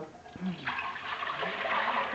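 Tap water being poured from a glass jug into a metal pressure cooker: a steady splashing pour that begins under a second in.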